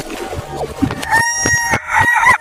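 A rooster crowing: one long call starting a little over a second in.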